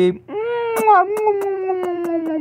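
A person's voice holding one long, high-pitched falsetto note that starts shortly in and slowly falls in pitch, with a scatter of sharp plastic clicks from LEGO bricks being handled.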